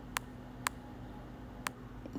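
Three faint, sharp clicks spaced irregularly over a low steady hum.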